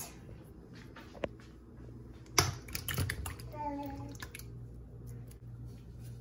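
Kitchen handling of a can of tomatoes and a plastic bowl: a few sharp clicks and knocks, the loudest about two and a half seconds in, as the canned tomatoes are opened and tipped into the bowl.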